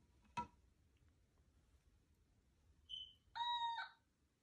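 Otamatone toy synthesizer sounding a brief high squeak, then one steady note of about half a second near the end, its cat-like electronic voice shaped by squeezing the mouth-shaped head. A soft handling click about half a second in.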